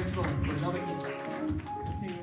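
Live praise-and-worship music from a church band with keyboards and drums, with voices over it, gradually getting quieter.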